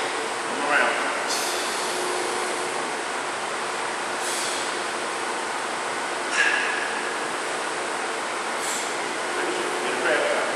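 Steady hissing background noise, with a few short, faint sounds breaking through it about a second in, near the middle and near the end.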